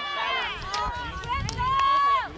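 High-pitched shouting and yelling from players and spectators, with long held calls and no clear words. A few sharp clacks of field hockey sticks striking the ball are heard about halfway through and near the end.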